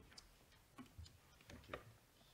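Near silence broken by about five faint, short knocks and clicks of papers and objects being handled at a lectern.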